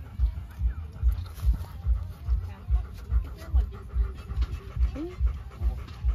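A Rottweiler panting steadily with its mouth open, a little over two breaths a second.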